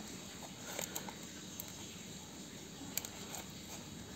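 Utility knife blade cutting the tape seal along the edge of a small cardboard toy box: faint scratching with a few small clicks, the sharpest about three seconds in.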